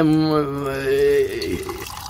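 Water running from the tap of a clay water jar into a clay cup, under a man's long drawn-out, chant-like vowel that holds steady, then slides down and fades out.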